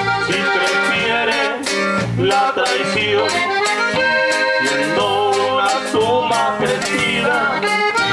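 Live norteño band playing an instrumental break: button accordion carrying the melody over strummed guitar, bass and a steady drum beat.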